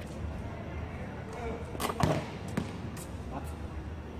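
A basketball thudding on a hard court a few times, the loudest hit about halfway through, with players' voices around it.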